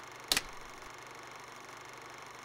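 A film clapperboard's clap: one sharp snap about a third of a second in, over a steady background hiss.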